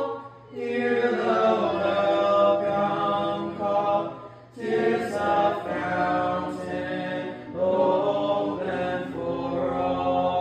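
A congregation singing the invitation hymn together, unaccompanied, in long held phrases with brief breaks for breath about half a second, four and a half, and seven and a half seconds in.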